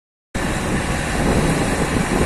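Diesel engines of a loaded Mercedes-Benz 1618 sugarcane truck and a tractor alongside it running under load as they pull out across a field, a steady low rumble mixed with broad noise, beginning about a third of a second in.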